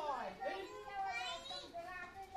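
Children talking in high voices, their pitch rising and falling as they speak.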